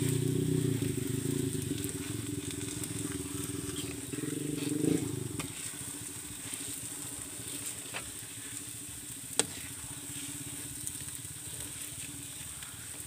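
Metal spoon stirring and scraping a thick, sticky sweet corn, coconut milk and brown sugar mixture in a metal wok over a wood fire, with a light sizzle. The stirring is busiest for about the first five seconds, then quieter, with a few light clicks and one sharp click about nine seconds in.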